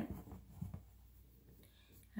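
Light rubbing and scratching of hands being wiped clean of eyeshadow powder, a little louder at first and then faint, with a few small clicks.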